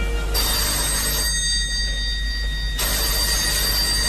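Telephone ringing twice: a short ring about a third of a second in, and a longer ring starting near three seconds that continues past the end, before the call is answered.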